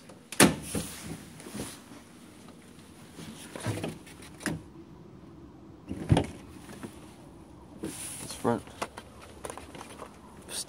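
Front door being opened and pulled shut: a series of sharp knocks and clunks at irregular intervals, the loudest about half a second in and again about six seconds in.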